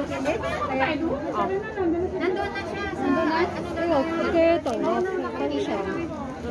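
Chatter of several people talking at once, their voices overlapping with no single clear speaker.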